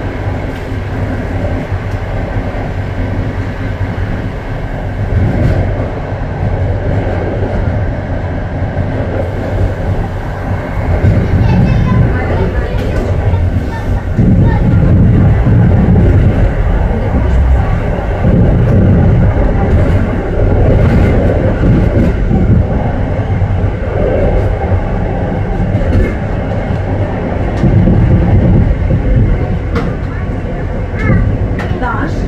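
A moving passenger train rumbling along the track, heard from on board. The rumble grows louder about halfway through as the train runs over a set of points.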